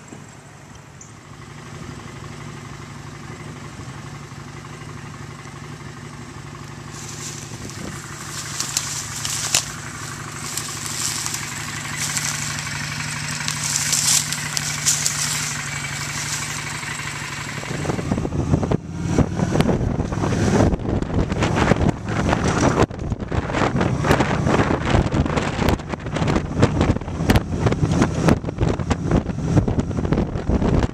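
A vehicle engine running with a steady low hum, with some hiss joining it in the middle. About eighteen seconds in, loud buffeting wind noise on the microphone takes over and covers the engine.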